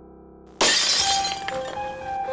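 A held music chord fading, then a little over half a second in a sudden loud crash that rings off over about a second while the music carries on. It is an off-screen noise that makes the characters start.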